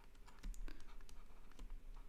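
Stylus tapping and scratching on a tablet screen during handwriting: a string of faint, irregular clicks.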